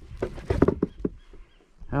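Handling knocks and clatter of a landing net and fish against a plastic kayak hull, a quick run of knocks in the first second or so that then dies away.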